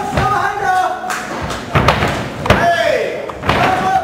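Gloved punches landing in a kickboxing exchange: a handful of sharp thuds, the loudest about two and a half seconds in, over people shouting around the ring.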